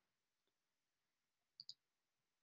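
Near silence: room tone, with two faint clicks in quick succession about one and a half seconds in.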